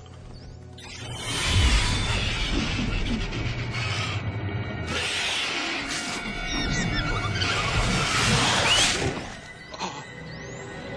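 Film sound effects of a bat swarm: dense screeching and fluttering, with short sharp squeaks, in two loud swells under dramatic music, cutting off abruptly near the end.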